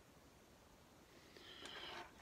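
Near silence: room tone, with a faint soft noise rising near the end.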